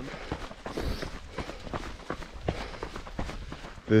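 Footsteps of runners on a dirt trail, an irregular crunching of shoes about two to three steps a second, at a tired walk-jog pace.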